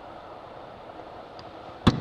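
A single sharp knock near the end, over a steady faint background noise.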